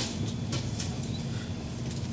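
Plastic shopping cart rolling along a store aisle: a low steady rumble with a few light clicks.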